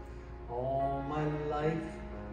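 Instrumental accompaniment to a gospel solo, with a sustained melody line coming in about half a second in.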